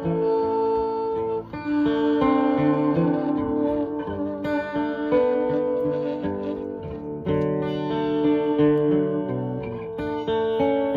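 Acoustic guitar and saxophone playing together, the saxophone holding long melody notes over the guitar's chords.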